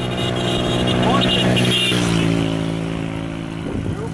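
An engine running steadily nearby, its pitch stepping down slightly about halfway through.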